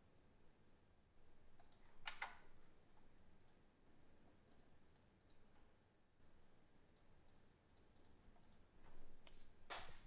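Faint, scattered clicks of computer keyboard keys and mouse buttons, with a louder click about two seconds in and another near the end.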